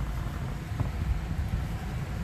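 Low, uneven rumble of microphone handling and air movement inside a car's cabin as the phone is swung around, over a faint steady fan hiss.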